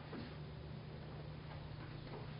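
Quiet room tone in a hall: a faint steady low hum with light hiss.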